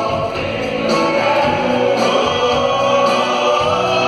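Live band playing with men's voices singing, lead and backing vocals together holding long sustained notes.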